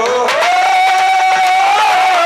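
A singer in a nautanki folk-theatre song holds one long high note, rising into it about half a second in and wavering slightly near the end, over light musical accompaniment.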